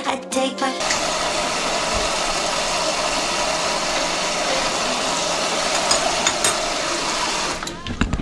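A kitchen faucet runs a stream of hot water into a metal pot of rice vermicelli noodles in a stainless steel sink: a steady splashing hiss. It starts about a second in and stops just before the end as the tap is shut off.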